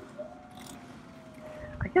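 Faint dog whine: one long thin note that rises briefly, then slowly falls.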